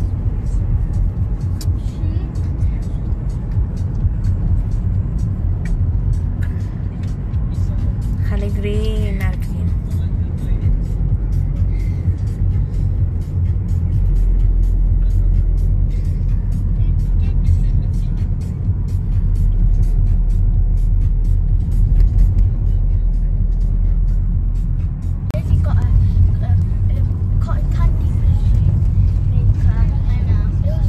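Steady low rumble of road and engine noise inside a moving car's cabin, with light scattered ticks through the middle and brief voices.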